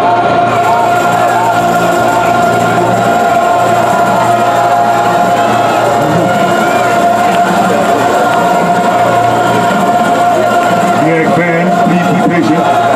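A marching band's brass section in the stands holding a long, steady chord, with crowd talk over it.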